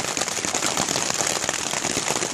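Rain falling on a tarp shelter overhead during a thunderstorm: a steady, dense patter of drops.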